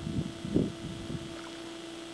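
A steady low electrical hum on the recording, with a few low, muffled bumps of wind or handling on the microphone in the first second or so.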